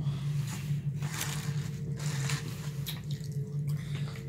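Juice sipped through a juice-box straw, with scattered short wet slurping and chewing sounds over a steady low hum.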